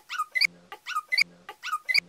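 Small dog vocalizing in a repeating cycle: short high whines alternating with a low grumbling growl, about three cycles over two seconds.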